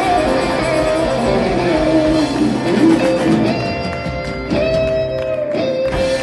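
Live rock band of electric guitars, acoustic guitar, bass and drum kit playing the closing bars of a rock and roll song: full band playing, then a couple of sharp accented hits in the second half and a final held note left ringing.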